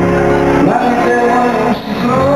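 Live pop performance: a male singer holding long notes that slide in pitch over a band, with a short break just before the end.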